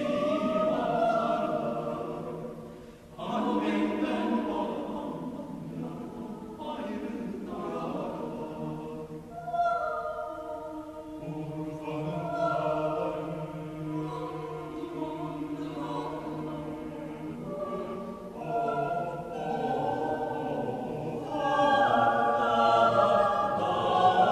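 Mixed choir of men and women singing a cappella in sustained, overlapping chords, with a short break about three seconds in and a swell to louder singing near the end.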